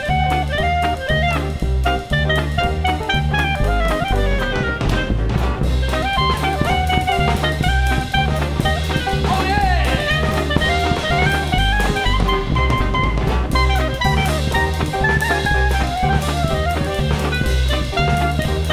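Instrumental New Orleans-style swing jazz from a small band: drums and steady bass notes under shifting melodic lines.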